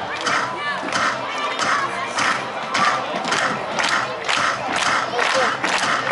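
A group of softball players chanting a rhythmic dugout cheer in unison, the shouted beats coming about twice a second.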